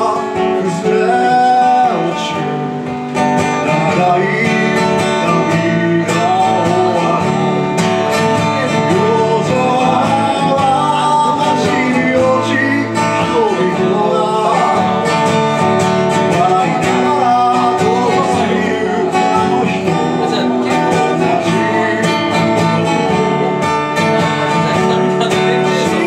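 Acoustic guitar strummed steadily, with a man singing along.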